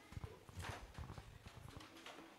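Faint, irregular knocks, scuffs and shuffling of a congregation getting to its feet: chairs moving and footsteps on the floor.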